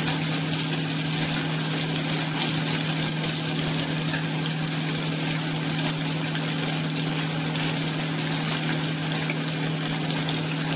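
Chicken pieces frying in a deep fryer: a steady sizzling hiss of hot oil with fine crackles, over a steady low electrical hum.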